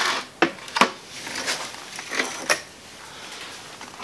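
A few light clicks and taps from handling a small plastic tub of linseed oil, sharpest in the first second and quieter after about two and a half seconds.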